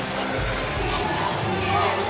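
Basketball game sound from the arena: a ball bouncing on the hardwood court amid crowd noise, with steady background music underneath.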